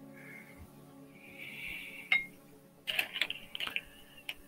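Faint background music under a few light clicks and clinks of small hard objects: one sharp click about halfway through, then a quick run of them near the end, with a soft scratchy hiss before each.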